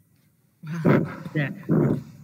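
Brief near silence, then several people's voices coming over a video call, saying goodbye.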